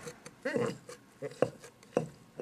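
Metal scissors knocking against a glass jar as a scrub sponge is pushed down inside it: two sharp clicks, one in the middle and one near the end. Just before them comes a brief wordless murmur of a woman's voice.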